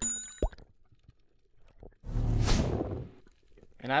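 Subscribe-button animation sound effect: a bright, quickly fading chime with a short rising pop right after it. About two seconds in comes a loud rush of noise lasting about a second.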